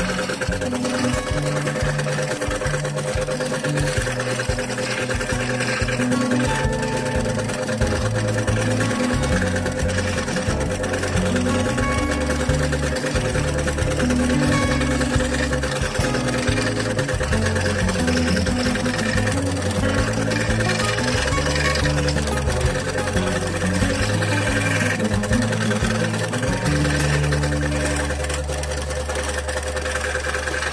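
Electric scroll saw running steadily, its reciprocating blade cutting a small piece of thin wood along a paper pattern, with background music playing over it.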